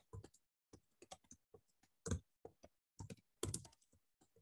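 Faint typing on a computer keyboard: irregular keystrokes, one louder strike about halfway through and a quick run of louder ones near the end.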